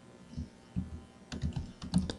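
Computer keyboard being typed: a few separate keystrokes, then a quicker run of keystrokes in the second half.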